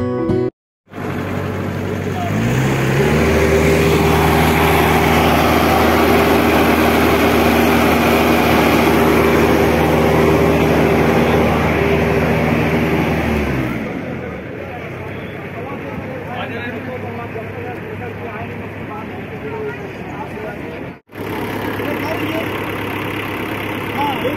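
An engine on a piece of farm machinery starts up, rising in pitch as it comes up to speed. It runs steadily for about ten seconds, then winds down and stops, with crowd chatter around it.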